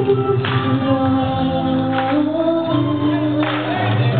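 A female vocalist singing a gospel song live into a microphone over accompanying music, amplified through stage PA speakers, holding long notes that glide in pitch.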